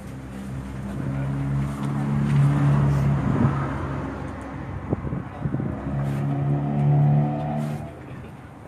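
A vehicle engine running with a steady hum that swells twice: through the first half, and again between about six and eight seconds in.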